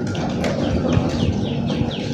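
A bird chirping in a fast series of short, falling notes, about four a second, starting about half a second in, over a steady low background rumble.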